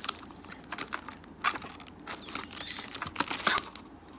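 Foil booster-pack wrappers and a cardboard box being handled: an uneven run of light crinkles and clicks as packs are pulled out of the box.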